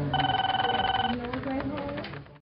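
A bright ringing tone with a fast pulse, like a telephone bell, lasting about a second. It is part of a short end-of-video logo sting, with a voice just before and after it.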